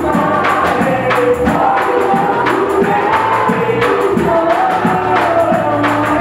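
A congregation singing a gospel worship song together, clapping along to a steady beat of about two strokes a second.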